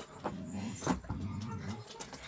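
A person's low moaning vocal sounds, wavering in pitch, with a short higher cry about halfway through.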